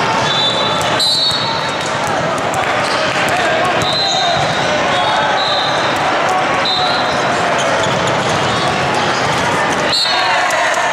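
Busy indoor volleyball hall: a constant din of many voices from players and spectators, sharp ball smacks from play, including a jump serve about six seconds in, and several short high-pitched tones.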